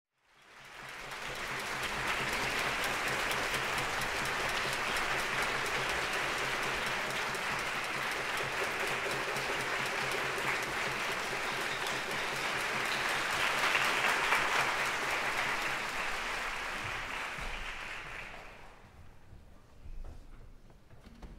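Audience applause in a concert hall. It swells up within the first second, holds steady and builds slightly past the middle, then dies away over the last couple of seconds.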